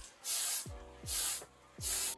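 Aerosol can of primer spraying in three short bursts of hiss, each about half a second long.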